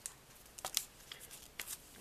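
Paper picture sleeves of 45 rpm singles being handled and shuffled: a few brief, soft rustles and clicks.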